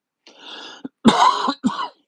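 A man clearing his throat: a breathy stretch, then a loud raspy cough about a second in and a shorter one near the end.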